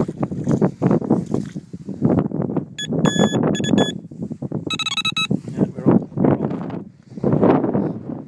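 Electronic carp bite alarms on a rod pod sounding during a line test: a few short beeps from one alarm, then a quicker run of beeps at a different pitch from a second, showing the alarms are working. Wind rumble and handling noise on the microphone run underneath.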